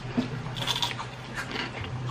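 Crunching and chewing a crisp onion-flavoured ring chip, with irregular short crunches.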